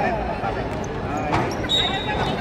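Basketball game on an outdoor court: a single sharp thud of the ball about two-thirds of the way through, over background voices, with a thin steady high tone starting near the end.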